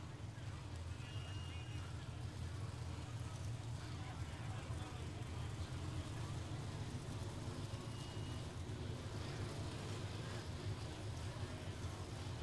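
Pro Stock drag cars' naturally aspirated V8 engines idling at the starting line during staging, a steady low rumble.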